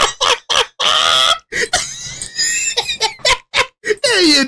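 A man laughing hard, in a run of short, uneven bursts with brief gaps between them.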